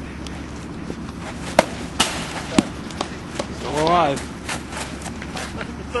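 Three sharp knocks in quick succession about two seconds in, among them a bat striking a baseball. A couple of seconds later comes a long shout that rises and falls in pitch.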